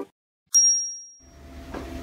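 A single bright bell ding, like a bicycle bell, struck once about half a second in and ringing out for just under a second. From a little over a second in, the low steady running noise of a Kluge platen press rises underneath it.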